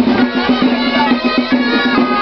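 Traditional Catalan street music accompanying the festival giants: loud, reedy woodwinds play a tune over a steady low held note, with drum beats.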